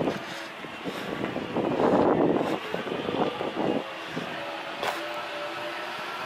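A car passing on the street, its tyre and engine noise swelling about two seconds in and then fading to a steady traffic hum.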